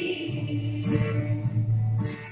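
Acoustic guitar accompaniment ringing on between sung phrases of a Karbi traditional song, with a few strokes on the strings. The women's group singing tails off at the start.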